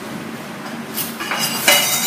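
Dishes and utensils clinking as food is served from a plastic basin onto plates, with a sharp clink about a second in and more clatter near the end.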